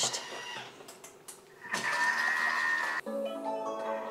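Thermomix TM6 mixing at speed 3.5 with a steady high whine, then, about three seconds in, a short run of electronic tones from the machine: the chime that signals the end of the mixing time.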